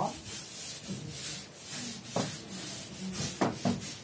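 Chalkboard being wiped with an eraser in repeated short rubbing strokes, with a few sharper knocks a couple of seconds in and again near the end.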